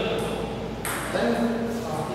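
A table tennis ball struck once, a sharp click with a short high ring about a second in, with men's voices in the hall around it.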